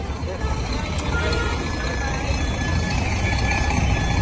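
Street background noise: a low, steady rumble of motor traffic with faint voices in the distance.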